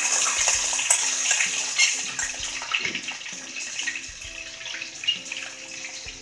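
Sliced onions sizzling as they drop into hot oil in an aluminium pot. The hiss is loudest for the first couple of seconds, then settles to a lower, steady frying sizzle.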